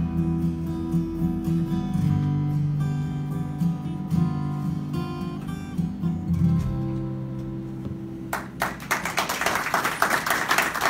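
Acoustic guitar playing the closing chords of a folk song, ending on a held chord that rings out. About eight seconds in, the room starts clapping.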